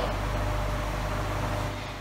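Steady low hum with an even hiss, with no distinct events: background room noise.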